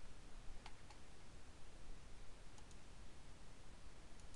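Computer mouse button clicking faintly: two quick pairs of clicks about two seconds apart, over a low steady hiss.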